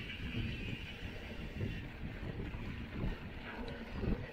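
Mountain bike being ridden along a dirt trail: wind buffeting the microphone over the uneven noise of the tyres rolling on dirt and the bike rattling.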